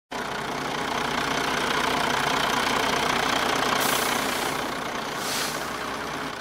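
Double-decker bus engine idling at a stop, a steady low rumble, with two short hisses of air a little before four seconds in and again after five seconds.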